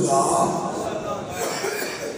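A man speaking into a microphone.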